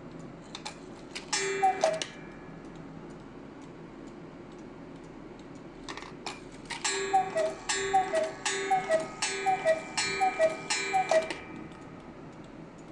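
Mechanical German cuckoo clock: clicks as the hand is turned, then the cuckoo's two-note falling call once. A few seconds later comes a run of about nine cuckoo calls, roughly two a second, over the clock's ringing bell as the hand is set to the hour.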